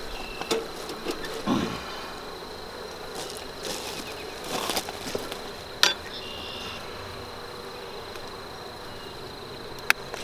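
Honey bees buzzing around an open, freshly smoked nuc box, with a few sharp clicks of a metal hive tool: the loudest about six seconds in as it is picked up off the wooden board, another near the end as it goes in between the frames.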